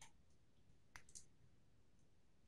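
Near silence with three faint computer keyboard clicks: one at the start and two close together about a second in.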